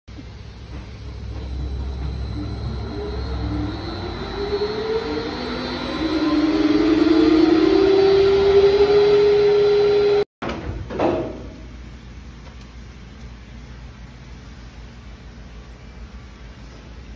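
Rug-wringing centrifuge spinning up, its motor whine rising steadily in pitch over a low rumble, then holding one steady tone at full speed. After a cut about ten seconds in, a brief falling sweep and then a much quieter hum.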